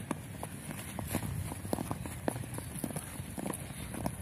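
Running footsteps of several players on a grass pitch: irregular soft thuds and clicks, several a second, over a steady low rumble.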